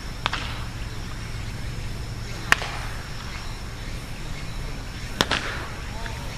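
Three sharp cracks of baseball practice, about two and a half seconds apart, the middle one loudest, over a steady low outdoor hum.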